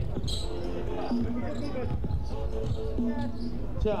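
A basketball bouncing on a wooden gym floor, a few separate thuds, with voices carrying in the large hall.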